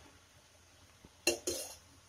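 A stainless-steel ladle knocks and scrapes twice against an iron kadai while stirring rice, two short metallic sounds just past the middle.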